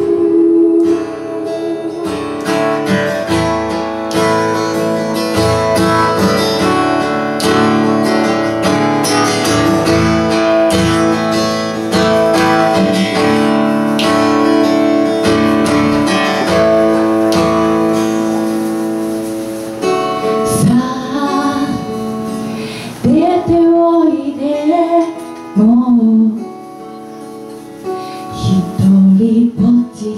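Live acoustic guitar strummed under a woman's singing. About two-thirds of the way in, the strumming thins out and the sung melody comes to the fore.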